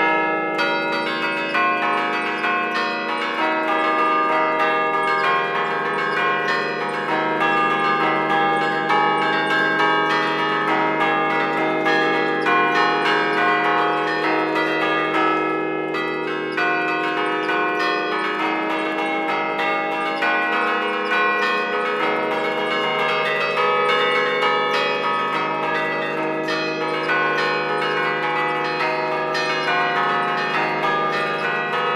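Church tower bells played by hand from a restored wooden baton keyboard (tastiera), the Bergamasque way. Each key pulls a clapper against a fixed bell, giving a quick run of struck notes whose tones overlap and ring on.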